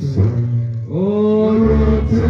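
Worship music: singing voices holding long notes over a low, steady bass line, with a new sung phrase sliding up into place about a second in.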